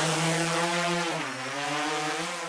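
Buzzing whir of small drone propellers as a logo sound effect: a steady pitched buzz that dips in pitch about a second in, then holds.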